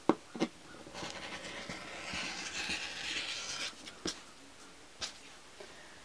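Quilting rotary cutter rolling through two stacked layers of fabric on a cutting mat, a gritty hiss lasting about three seconds. A few sharp clicks come before and after the cut.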